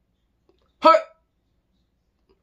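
A man's single short, loud shout, a clipped "hah!", about a second in, given in time with a martial-arts-style move.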